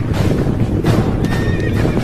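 A group of horses galloping, dense hoofbeats with a horse neighing in the second half, over a dramatic music score.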